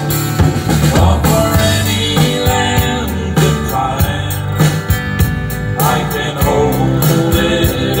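A live country band playing: drum kit, electric and acoustic guitars and bass guitar together, with regular drum strokes.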